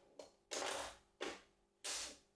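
Steel pinball balls rolling and clattering through a homemade automatic ball-return mechanism as its small push solenoids fire, heard as a few short bursts of rattle, the longest about half a second in.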